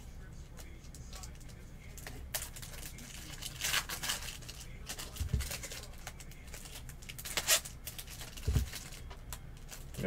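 Trading cards being handled and sorted by hand: rustling and sliding in several short bursts, with two soft thuds about five and eight and a half seconds in as cards are set down on the table.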